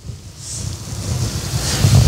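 Rustling, rushing noise on a microphone with a low rumble, slowly growing louder.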